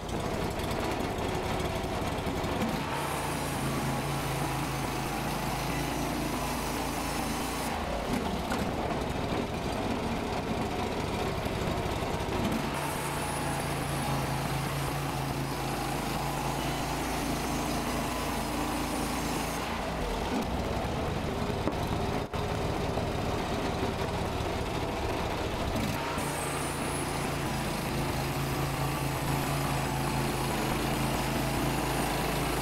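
Gas engine of a LumberMate 2000 portable band sawmill running under load as its band blade cuts lengthwise through a white oak log. The engine note shifts a few times as the load changes, with one brief dip about two-thirds of the way through.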